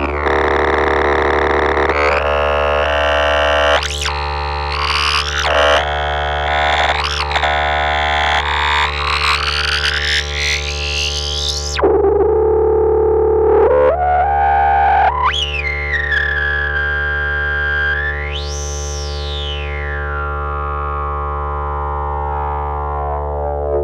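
Ciat-Lonbarde Peterlin, a Benjolin-type synthesizer, playing one oscillator through its resonant filter over a steady low drone. A bright filter sweep climbs for about ten seconds and then cuts off abruptly to a low, hollow tone. A whistling resonant peak then glides up very high and falls back down.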